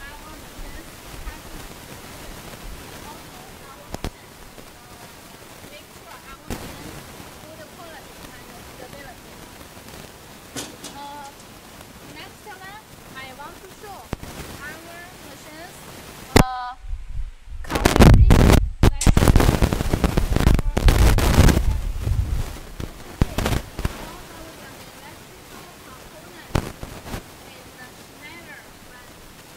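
Faint distant voices, then about 16 seconds in a sharp knock followed by some four seconds of loud, irregular knocking and rubbing noise.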